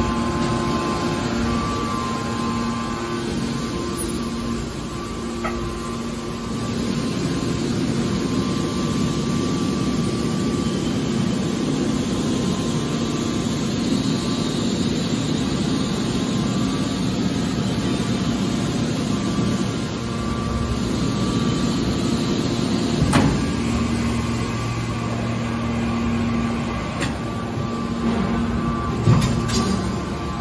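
Hydraulic scrap-iron baler's power unit running with a steady hum. Its tone shifts about two-thirds of the way through, and there are a couple of sharp knocks near the end.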